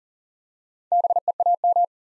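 Morse code sent as a keyed single-pitch beep at 40 words per minute, spelling BEAM (dah-dit-dit-dit, dit, dit-dah, dah-dah), starting about a second in.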